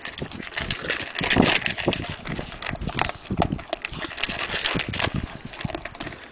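A large dog eating dry kibble from a plastic bowl: a steady, irregular run of crunching and the clatter of pellets knocking around the bowl.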